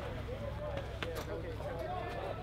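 Faint voices of people talking in the background over a steady low hum, with a single short click about a second in.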